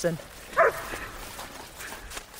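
German shepherd giving a short bark about half a second in.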